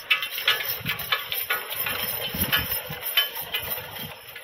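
Draft horse pulling a sled over snow: irregular crunching and clinking from hooves, runners and harness, several sharp clicks a second with low thuds underneath.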